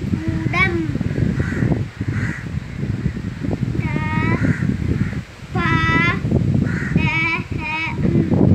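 Crows cawing about five times in short, wavering calls, over a child's voice and a steady low background noise.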